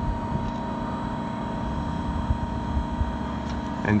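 Steady hum of a running LG VRF outdoor unit, its condenser fans and inverter compressor, with a few faint steady tones above a low rumble.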